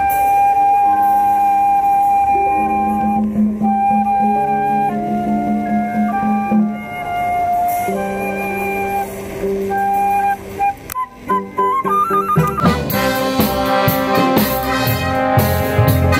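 Live jazz band: a flute plays a slow solo of long held notes over sustained low accompaniment, then a quick rising run about eleven seconds in, after which the full band comes in with trombones and other brass.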